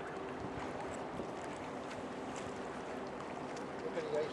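Steady low hum of a 1,000-foot Great Lakes freighter's engines and machinery as its stern passes close by, under a broad rush of wind on the microphone and water.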